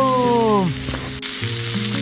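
Sliced lamb and vegetables sizzling steadily on a cast-iron jingisukan dome grill. In the first second a drawn-out falling hum sounds over the sizzle.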